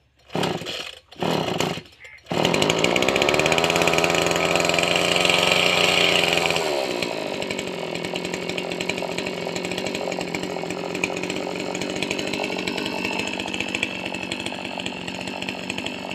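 Small two-stroke engine of a backpack power sprayer being pull-started: two short pulls sputter in the first two seconds, then it catches and runs at high revs. About seven seconds in the engine speed drops, and it runs on steadily at a lower speed.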